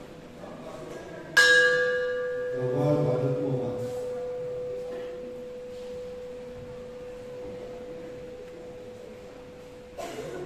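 Small hanging brass bell struck once with a stick about a second and a half in, then ringing on with one long, slowly fading tone whose higher overtones die away within a few seconds.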